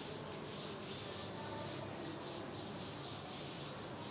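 Chalkboard duster rubbed briskly back and forth across a chalkboard, erasing chalk writing, a scratchy swishing repeated about four strokes a second.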